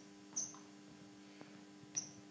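Athletic shoes squeaking on a wooden sports-hall floor as a player walks: two short high squeaks, about half a second in and at the end, over a steady low hum.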